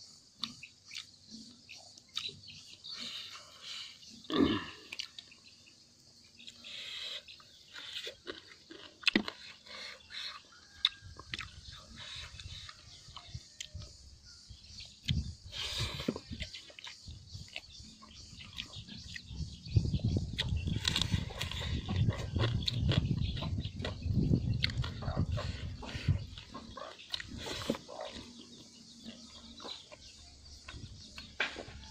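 A person chewing and smacking while eating by hand, close to the microphone, with many small wet clicks. The chewing is loudest for several seconds past the middle.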